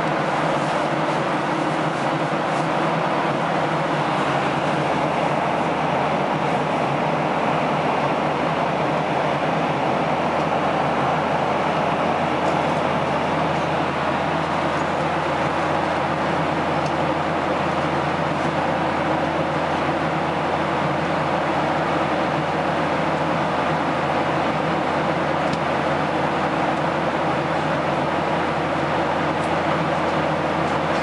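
Jet airliner cabin noise in flight: a steady, even rush of engine and airflow noise.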